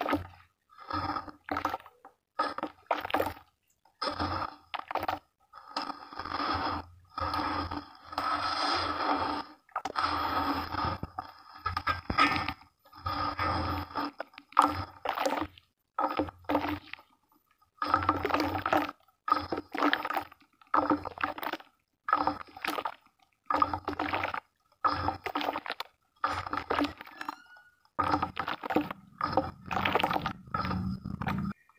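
Hands squeezing and kneading a thick slurry of wet red dirt: wet squelching and sloshing in short bursts about once a second, with silent gaps between.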